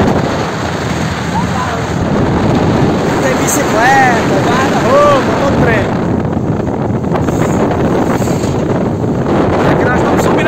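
Wind buffeting the microphone over the steady running and road noise of a loaded Chevrolet D20 pickup climbing a long hill. Two brief rising-and-falling voice-like calls come about four and five seconds in.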